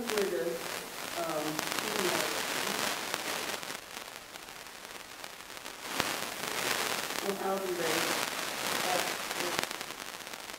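An audience member asking the presenter a question, faint and off-mic, in two stretches, with a crackling hiss throughout.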